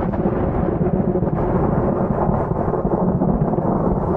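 Loud, steady low rumbling noise, strongest in the bass and fluttering slightly in level, with no clear tone or separate events.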